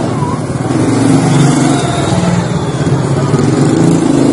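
A motor vehicle's engine running close by, with a steady low hum that gets louder over the first second and then holds.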